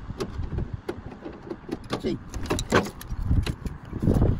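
Irregular sharp metallic clicks and knocks of a hand tool working on a scrapped car's door.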